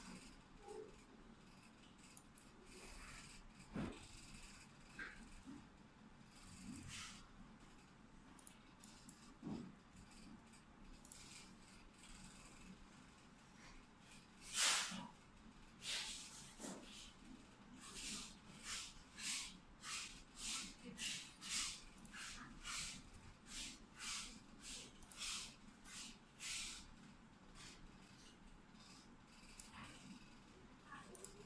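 Keys of the GPD Pocket 2's small laptop keyboard being typed: a few scattered faint clicks early on, then from about halfway a run of key clicks at roughly one and a half a second that stops near the end.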